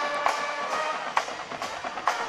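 Band music playing at a high school football game: horns holding a sustained chord over drum hits about twice a second.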